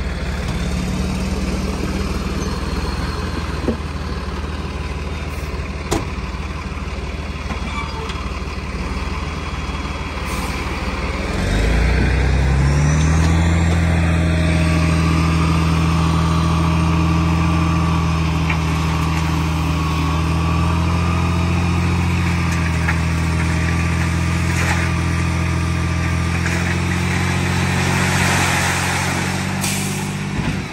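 Diesel dump truck engine idling, then about twelve seconds in it steps up to a louder, higher steady speed to drive the hydraulic hoist that tips the loaded bed, with a faint whine over it. Near the end the load of dirt slides out of the raised bed.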